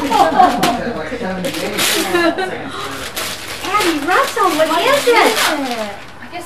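Indistinct, wordless voices with swooping, sing-song pitch, among a few brief rustles and knocks as a cardboard gift box is handled.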